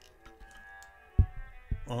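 Two handling knocks about half a second apart, the first and louder a little over a second in, as the test panel is picked up and handled, over faint steady tones.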